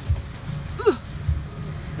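Low, dull thumps and rumble as grocery bags are handled and set into a car's trunk from a shopping cart, with a woman's short 'ooh' about a second in.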